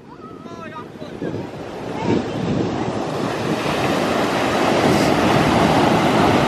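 Ocean surf breaking and washing up the beach, a rushing noise that grows steadily louder over the first few seconds, with wind buffeting the microphone.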